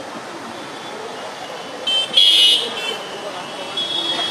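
Traffic noise and voices of a street procession, with a vehicle horn honking twice about two seconds in: a short toot, then a louder one held for just under a second.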